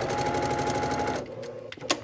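Electric domestic sewing machine stitching at a fast, even rate, a rapid run of needle strokes over a steady hum, as it sews a short diagonal seam corner to corner across two fabric squares. It stops a little over a second in, and a couple of sharp clicks follow near the end.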